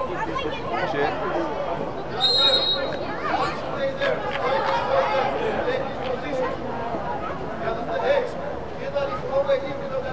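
Overlapping voices of spectators and players chattering and calling out, with one short, high referee's whistle blast about two seconds in.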